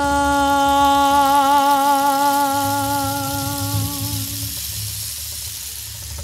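A woman singing one long held note with a slight vibrato, fading out about four and a half seconds in, over a soft low bass line in the backing music.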